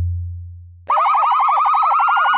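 Sound effects: a deep bass boom fading out over the first second. Then, about a second in, a loud, fast-warbling alarm siren starts, its pitch slowly creeping upward.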